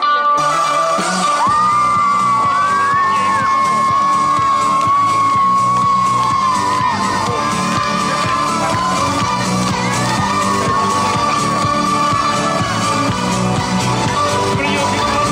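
Dance music playing loudly: a long, high held melody line with bends over a steady beat that comes in about a second and a half in.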